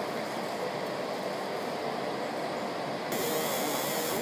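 Steady mechanical running noise from engraving-shop machinery, even in level throughout. About three seconds in, the hiss gets brighter.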